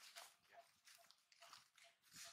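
Near silence: faint rustling of dry leaf litter under monkeys running, with a faint, regular high chirp about two and a half times a second behind it.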